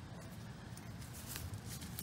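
Faint rustling of grass and loose soil being handled by hand, with a few soft crackles in the second half as the dug plug hole is filled back in.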